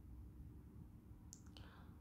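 Near silence with a faint hum, broken by a couple of faint stylus taps on a tablet screen about one and a half seconds in.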